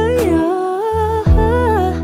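Music: a slow Filipino pop (OPM) song, a gliding vocal melody over held bass notes.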